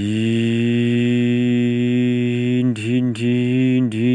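A man's voice imitating a truck engine for a hand-pushed toy truck: one long, steady hum for about two and a half seconds, then short pulsed syllables near the end.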